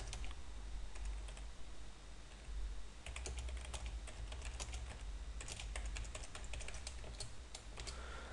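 Computer keyboard being typed on: a run of quick, faint keystrokes, sparse at first and coming fast and dense from about three seconds in, over a low steady hum.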